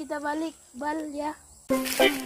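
A child's voice in two short utterances over a faint, steady, high-pitched insect drone; loud music starts abruptly near the end.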